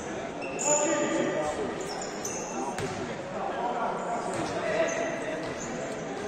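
Futsal played on an indoor hall court: sneakers squeaking on the floor again and again, one sharp thud of the ball about three seconds in, and players' shouts, all echoing in the large hall.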